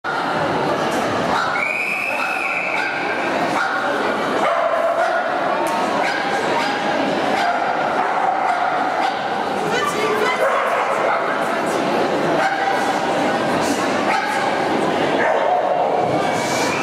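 Dogs barking and yipping repeatedly over the chatter of spectators, with the echo of a large indoor hall. A high steady tone sounds for about a second near the start.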